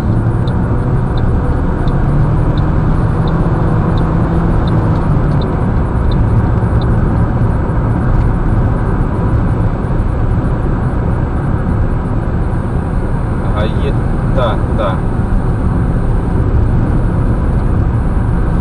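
Steady road and engine noise inside a car cruising on a highway, a loud even rumble with no change in pitch.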